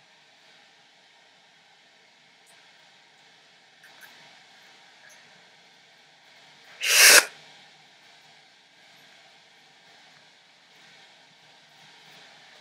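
Faint room tone with light handling sounds. About seven seconds in comes one short, loud, breathy burst of air lasting about half a second: a person's sharp exhale or huff.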